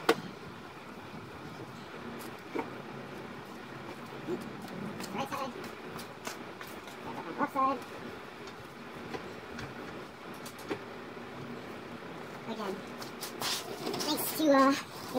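Scattered, irregular clicks and knocks of tools and parts during work under a car, over a steady background hiss, with two short vocal sounds such as a murmur or grunt in the middle.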